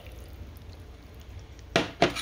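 A faint steady hiss, then a single sharp knock near the end, typical of an emptied drinking glass being set down on a stone kitchen countertop.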